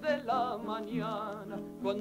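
A woman singing a Mexican folk song in Spanish with a wavering vibrato, over sustained notes of an acoustic guitar accompaniment.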